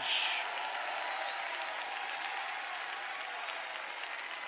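Audience applauding, a little louder at first and then steady.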